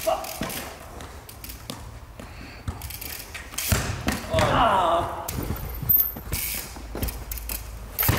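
Scattered thuds a second or two apart from a trial bike hopping and landing on artificial turf and a football being struck, with the ring of a large indoor hall.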